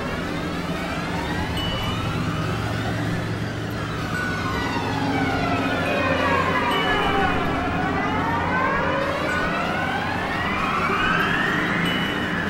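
Synthesizer drone: a stack of tones glides slowly down in pitch and back up again, siren-like, over a steady low hum, with short held notes popping in now and then.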